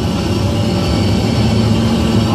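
Steady drone of a jet airliner cabin in flight: engine and airflow noise, a constant low hum under an even hiss.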